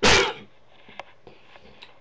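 A single short, loud, sneeze-like burst of breath, then a faint click about a second later.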